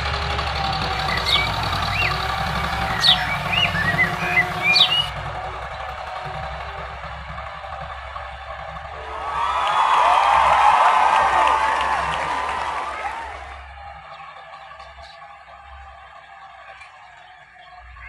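Farm tractor's diesel engine running steadily under load while it drags a cultivator through ploughed soil, with birds chirping over it in the first few seconds. A louder patch of dense high chattering rises about nine seconds in and fades by about thirteen seconds, and the engine sound drops away after that.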